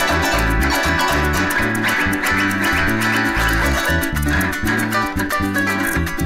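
Venezuelan llanero harp (arpa llanera) playing a fast joropo: a rapid plucked treble melody over a steady, stepping pattern on the bass strings, with cuatro and maracas keeping a quick even rhythm.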